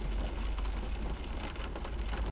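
Rain falling on a car's roof and windows, heard from inside the cabin: a steady patter over a low rumble.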